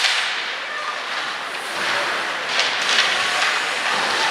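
Sharp crack of a hockey stick or puck striking on the rink right at the start, then a few more knocks and clatters about two and a half to three seconds in, over the steady hiss of skates and arena noise.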